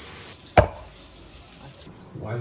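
A single sharp knock a little over half a second in, over a low steady background.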